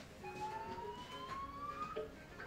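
A faint cartoon siren sound effect played through a television: a single slow rising wail, lasting most of two seconds.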